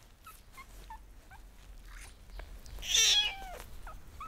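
Suckling kitten giving one loud, high-pitched mew about three seconds in, falling in pitch, after a few faint squeaks.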